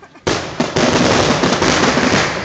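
Fireworks grand finale: a loud bang about a quarter second in, then a dense, unbroken barrage of overlapping shell bursts.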